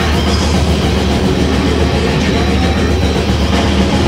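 Live heavy metal band playing: distorted electric guitar and drums in a loud, dense, unbroken wall of sound.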